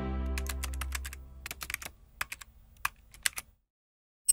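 Logo-sting sound effect: a deep sustained chord fading away under a run of irregular keyboard-typing clicks as text types out. It all stops a little before the end.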